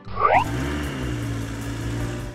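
A quick rising swoop, then a steady low engine hum: a cartoon truck-engine sound effect for the toy dump truck.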